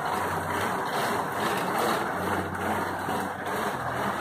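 Bicycle tyre spinning on the rollers of a homemade indoor trainer as the rider pedals: a steady whirring drone with a low hum that comes and goes.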